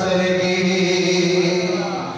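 A man's voice chanting a naat, unaccompanied devotional praise, into a microphone. He holds one long steady note that fades slightly near the end.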